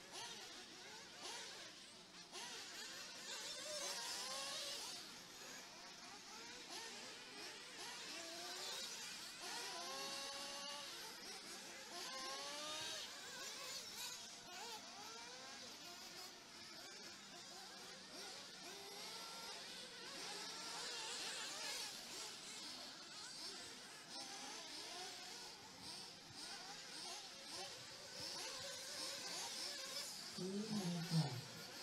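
Several 1:8 scale off-road RC buggies racing at a distance, faint. Their small motors buzz and rev up and down over and over as they accelerate and brake around the track, the rising and falling notes overlapping.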